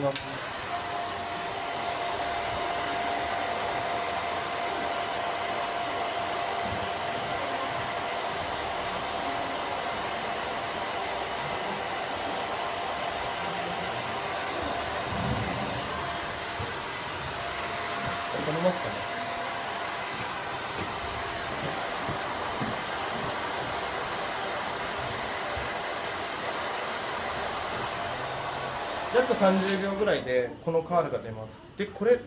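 Handheld hair dryer running steadily on damp hair, an even blowing noise with a faint high whine. It is switched off just before the end.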